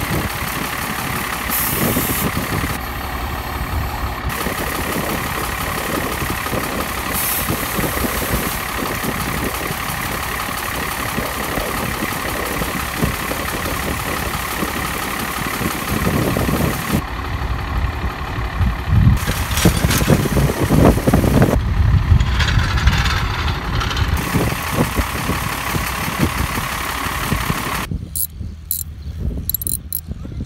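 A motor running steadily while a flat disc-harrow tire is inflated through an air hose. It gets louder and rougher, with knocks and rattles, for several seconds past the middle.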